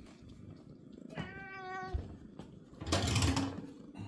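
A domestic cat gives a single meow about a second in, lasting under a second and fairly even in pitch. About three seconds in, a short, louder burst of noise follows.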